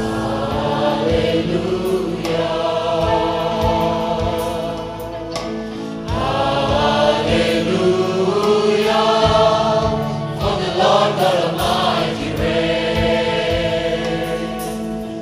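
Large youth choir singing a gospel worship song together, backed by a band with a steady drum beat.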